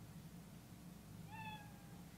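Scratch's stock cat meow sound effect, played once from the presenter's computer and heard faintly, a little over a second in, falling slightly in pitch. It is the quiz program's signal that a multiplication answer was right.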